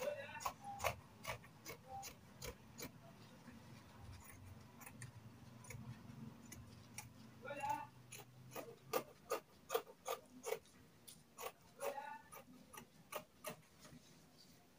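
Scissors snipping through sheer fabric, a run of sharp, irregular snips that come faster in the second half.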